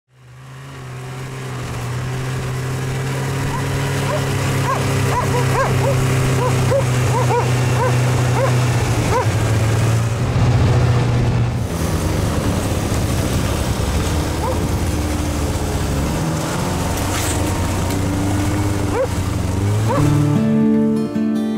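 Yamaha snowmobile engine running steadily under way, fading in at the start. A dog barks repeatedly for several seconds early in the ride, over the engine.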